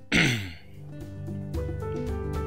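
A man clears his throat once, short and loud, just after the start, over steady background music.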